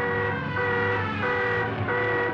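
Orchestral brass from the trailer's score, sounding a loud held chord again and again, each about half a second long with short breaks between.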